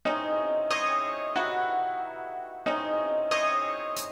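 Intro of a hip hop track: a bell-like sampled melody with no beat. Notes are struck in a short repeating phrase of two or three strikes about 0.7 s apart, and each note rings on.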